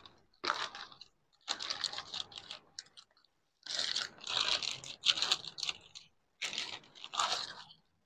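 Plastic shopping bag crinkling and rustling in irregular bursts as a cardboard shoe box is worked out of it, with short silent gaps between the bursts.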